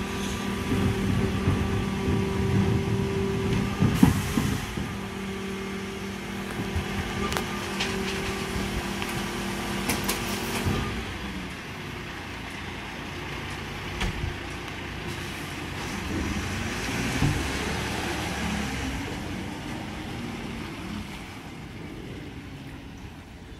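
Mercedes Econic refuse truck with a Geesink Norba MF300 body, its hydraulics running with a steady whine and the bin lifters clanking, the loudest knock about 4 s in. About halfway through the whine stops and the truck pulls away, its engine sound fading as it drives off.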